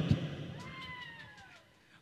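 Pause in amplified speech: the room's echo dies away to near silence. About half a second in, a faint, drawn-out cry falls slowly in pitch and fades out.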